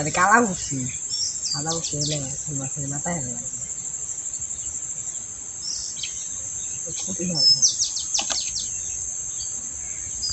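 Insects calling in a steady high-pitched drone, with a few short bird chirps about a second in and again near eight seconds.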